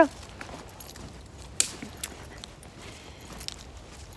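Footsteps on thin snow over dry leaves: a few soft steps and scattered clicks, one sharper click about one and a half seconds in.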